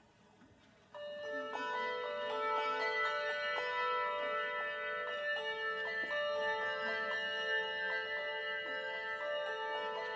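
A handbell choir starts playing about a second in. Many bells are rung and left ringing, so their sustained tones overlap into layered chords.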